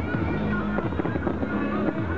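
Aerial fireworks shells bursting and crackling, mixed with the loud music that accompanies the display.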